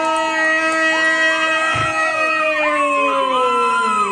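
A man's voice holding one long, unbroken goal shout, its pitch sinking slightly near the end, with spectators shouting and cheering around it.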